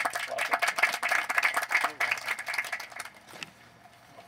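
A small seated audience applauding, many hands clapping at once; the clapping dies away about three and a half seconds in.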